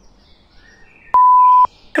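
A single censor bleep: a steady, high-pitched pure tone, edited in to cover a word. It starts abruptly about a second in, lasts about half a second and cuts off sharply.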